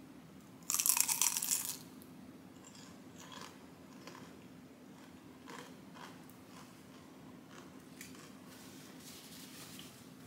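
A loud crunch as teeth bite into a crisp fried-cheese and refried-bean taco in a fried tortilla, about a second in, followed by quieter crunching as the bite is chewed.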